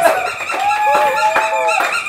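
A high-pitched, drawn-out voice held on one note for about a second, sliding in pitch at either end.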